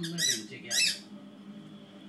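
A squeaky toy ball squeezed twice in quick succession, giving two short high squeaks, each rising and falling in pitch, within the first second.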